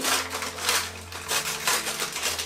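Gift wrapping crinkling and tearing in irregular crackles as a small taped-up present is pulled open by hand.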